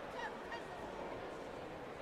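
Sports-hall ambience: a steady crowd murmur, with a couple of brief high squeaky chirps in the first half-second.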